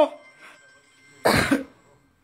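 A single short cough from a person, a little over a second in.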